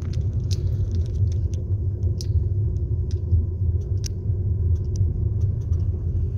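Steady low rumble of a car's engine and tyres heard from inside the cabin while driving slowly, with a faint steady hum and a few scattered light clicks.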